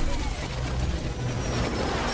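Action-movie soundtrack played in reverse: a dense, continuous roar with a heavy low rumble from jet aircraft and a blast, loudest right at the start.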